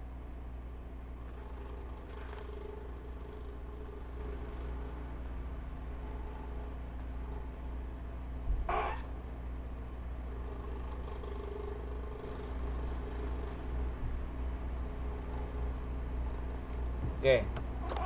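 Steady low background hum with faint wavering tones, and one short burst of noise about halfway through; a voice says a few words at the very end.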